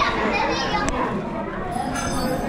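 Children's voices and background chatter in a busy restaurant dining room, with a sharp click about a second in.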